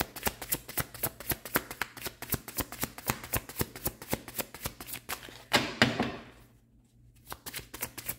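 A deck of tarot cards shuffled by hand: a fast run of light card slaps and clicks, with a brief softer rustle about five and a half seconds in, then a short pause before the shuffling picks up again near the end.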